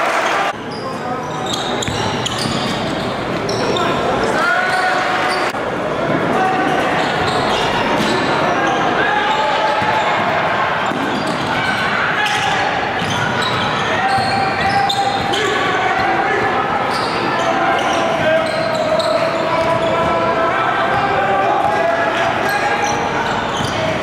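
Live basketball game sound in a gym: many voices from the crowd and players echoing around the hall, with a basketball bouncing on the hardwood floor. There are abrupt jumps in the sound where clips are joined, about half a second and five seconds in.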